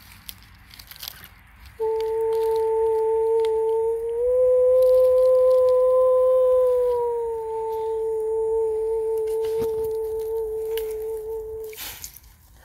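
A voice holding one long, high, pure-toned note, starting about two seconds in and lasting about ten seconds. It rises slightly in pitch through the middle and settles back down, then breaks off just before the end.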